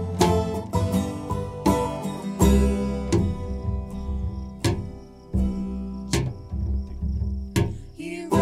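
Instrumental break of acoustic string-band music: strummed and picked acoustic guitar over plucked upright bass, with a smaller plucked string instrument, and deep bass notes coming in strongly a couple of seconds in.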